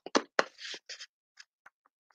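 Hand handling of a small item: several sharp clicks and taps with two short rustles in the first second, then a few fainter ticks.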